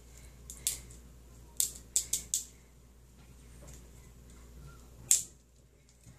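Plastic wrapping being picked and peeled off a small plastic container by hand, with scattered sharp crinkles and snaps: one about a second in, a quick cluster around two seconds, and a louder one near the end.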